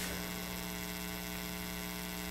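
Steady low electrical mains hum with a buzzy edge, unchanging throughout.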